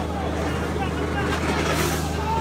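A steady low engine-like hum with faint voices of people talking in the background.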